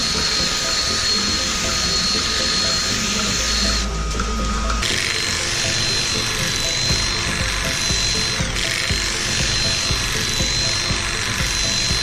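Cordless drill driving a Tailwell Power Tail Trimmer head, running steadily with a high whine as it clips a cow's tail hair. The whine dips briefly in pitch about eight seconds in, as if the motor slows under the load. Background music plays underneath.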